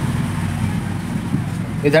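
A steady low background hum, like a running motor.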